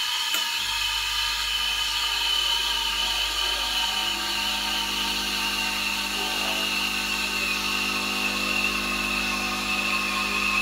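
Breville Oracle espresso machine: the automatic steam wand hisses steadily as it textures milk in the jug. About half a second in, the pump starts a double shot with a low hum that grows fuller around four seconds in as the extraction builds.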